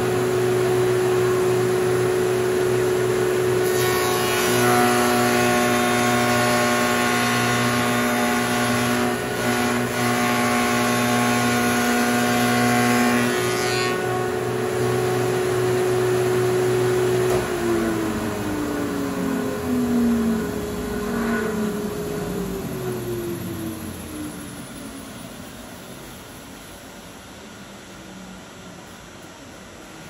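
Powermatic shaper's 5 hp motor running a three-wing carbide cove cutter. For about ten seconds the cutter chews a raised-panel cove into the edge of a double-refined MDF panel. The shaper is then switched off and spins down with falling pitch, and a second steady machine hum winds down a few seconds later.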